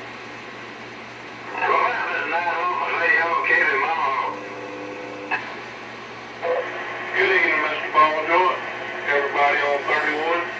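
Other CB operators' voices coming in over a Galaxy Saturn radio's speaker above a steady hiss of static, in two transmissions. A short steady tone and a click fall between them, about five seconds in.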